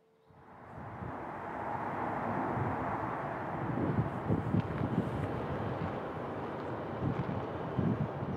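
Wind rushing over open ground and buffeting the microphone: a steady hiss with irregular low gusts, fading in over the first couple of seconds.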